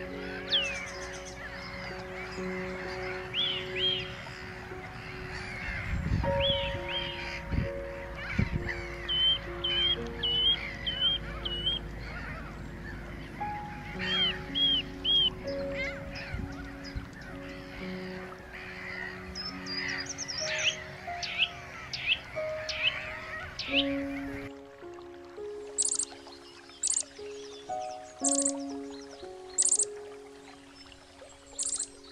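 Background music with a slow melody, over Mediterranean gulls calling in a colony: nasal, slurred calls, some in quick runs of three or four. Near the end the gull calls and the low background rumble stop, and short high chirps sound over the music.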